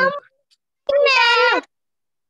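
One high-pitched, drawn-out vocal call lasting under a second, held then sliding down in pitch at the end, heard through a video call.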